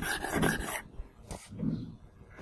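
Rapid rhythmic panting, about five breaths a second, that stops just under a second in; a short low sound follows near the end.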